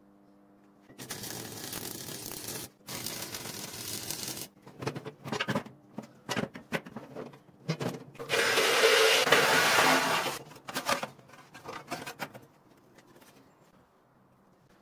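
Sheet metal of a barrel cooker being handled: several stretches of scraping noise, the longest and loudest from about eight to ten seconds in, with scattered knocks and clicks between them, dying away about two seconds before the end.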